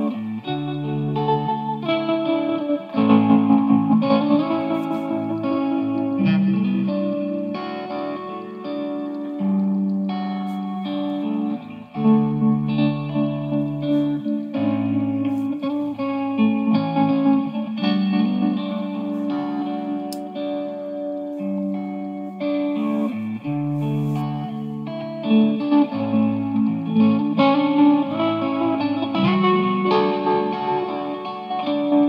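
Overdriven electric guitar lead through a Victory V40 Duchess valve amp, chopped by a Woodpecker tremolo pedal (a clone of the EarthQuaker Hummingbird), played over a looped rhythm-guitar backing. In stretches the volume pulses about four times a second, the tremolo rate set by hand and, by the player's own account, not quite matching the loop's tempo.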